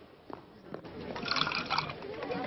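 A couple of faint steps, then from about a second in, liquid splashing and pouring into metal pots held out by a crowd, with many voices starting up behind it.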